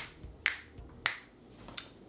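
Finger snapping: about four sharp snaps, a little over half a second apart.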